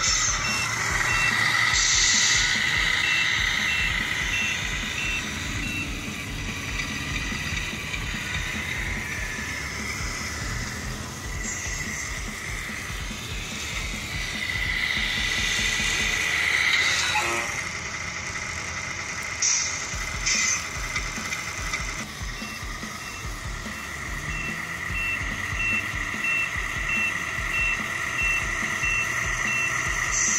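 Simulated big-rig diesel engine sound from the Tamiya MFC-01 sound unit's speaker in a 1/14 scale RC semi truck, running steadily. A reversing beeper sounds about twice a second for the first few seconds and again through the last several seconds as the truck backs up. Just past halfway a sound sweeps down in pitch.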